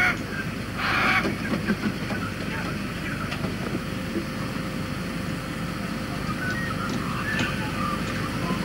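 Steady low outdoor background noise with a faint constant hum, a short rush of noise about a second in, and a few faint high bird chirps near the end.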